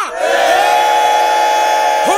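A long held vocal note. The voice drops in pitch at the start and then holds one steady note.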